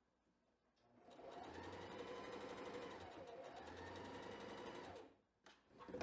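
Bernette 05 Academy electric sewing machine stitching a seam through layered cotton quilt squares at a steady speed. It starts about a second in, runs evenly for about four seconds, then stops.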